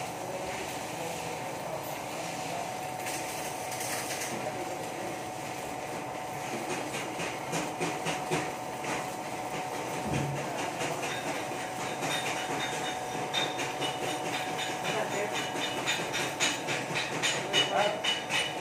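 Shielded metal arc (stick) welding on a steel pipe: the arc's steady sizzling crackle, turning sharper and more irregular, with frequent spiky pops, in the second half.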